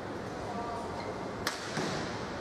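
Badminton racket striking a shuttlecock: one sharp crack about one and a half seconds in, followed by a fainter tick, over steady hall noise.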